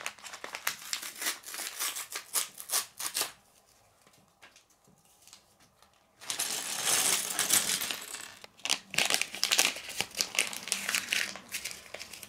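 A small paper bag of LEGO pieces being torn open and crinkled, then shaken out so the plastic bricks clatter onto a wooden tabletop. The paper rustles loudly about six seconds in, followed by a run of quick sharp clicks as the pieces drop onto the pile.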